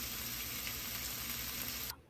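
Marinated paneer tikka pieces sizzling in ghee in a nonstick frying pan, a steady sizzle that cuts off just before the end.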